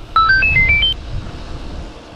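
A short electronic jingle: about eight quick beeps hopping up and down in pitch within the first second, like a phone ringtone or notification chime, over a low rumble.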